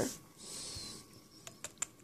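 Small handling sounds of nail-stamping tools on a paper-towel-covered table: a brief soft rustle, then three light clicks about a second and a half in, the last the loudest.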